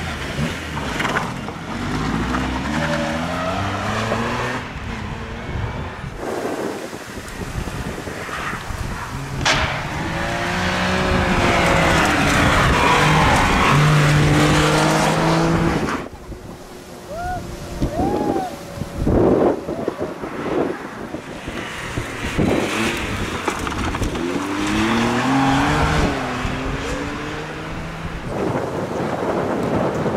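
Front-wheel-drive Toyota Yaris rally cars driven hard on a stage, one after another. Each engine climbs in pitch and drops back as the gears change, with a brief squeal a little past halfway.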